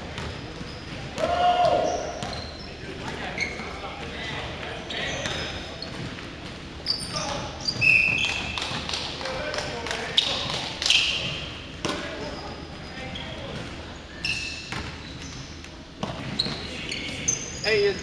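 A basketball bouncing on a hardwood gym floor during play, with short high squeaks and players' voices calling out across a large, echoing gym.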